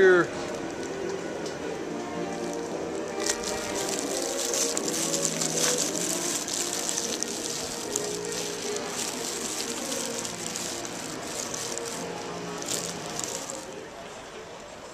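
Busy street ambience: music playing with people's voices mixed in, steady and at a moderate level.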